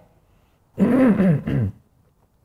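A man clearing his throat in two short voiced bursts, about a second in.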